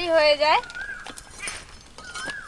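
A voice speaking briefly at the start, then a faint high held tone and a few light clicks and taps.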